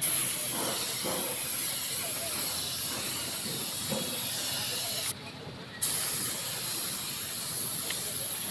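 Compressed-air gravity-feed paint spray gun hissing steadily as it sprays paint. The spray cuts off about five seconds in for under a second, then starts again.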